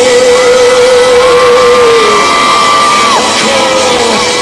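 Live pop-rock concert music: a male singer holds one long steady note, then a higher held note that falls away about three seconds in, over the full band, with the crowd shouting and cheering.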